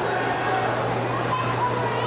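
Many children's voices, shouting and chattering as they play in an indoor swimming pool, over a steady low hum.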